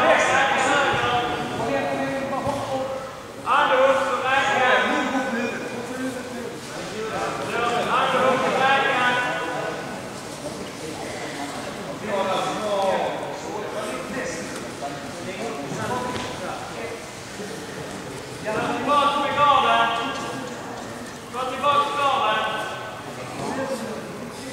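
Men's voices talking and calling out in bursts in a large sports hall.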